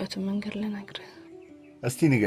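Film dialogue: a woman speaks softly for about a second over quiet background music. A short, loud spoken sound with falling pitch comes right at the end.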